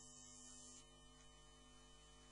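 Near silence: a faint steady hum of several held tones under the broadcast.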